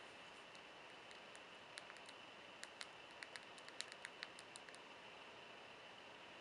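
Faint, irregular clicks of keys pressed on the HP Veer's slide-out hardware keyboard, about a dozen over a few seconds, against near silence.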